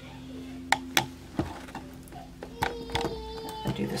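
Faint held tones of background music, with a few sharp taps in the first second and a half from a plastic stirring stick knocking against a jar of chalk paste.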